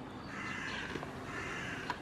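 A bird calling twice, two drawn-out calls each under a second long, the second starting about a second after the first.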